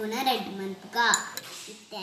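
A metal spoon clinks against a small ceramic bowl a couple of times, a little after a second in, with a short bright ring, over a child talking.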